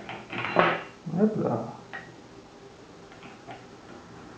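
A brief voice sound early on, then a few faint light clicks as an Allen key tightens the mounting bolt of a tactical foregrip clamped onto a Picatinny rail.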